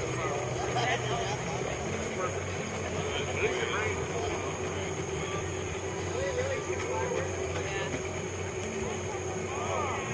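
Outboard motor of a small boat running with a steady low hum as the boat passes, with people's voices chattering over it.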